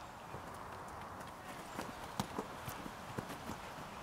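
Faint, irregular taps and scuffs of players' footsteps on a hard court over a low background hiss.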